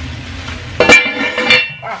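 Bubble wrap rustling as it is pulled off a cast-iron pot lid. About a second in the lid clinks against the pot with a short metallic ring, and a second knock follows. A brief "ah" comes near the end.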